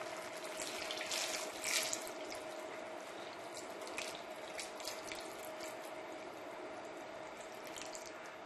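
Salt brine poured steadily from a plastic jug into a plastic tub, splashing over the stuffed eggplants packed inside to cover them for pickling.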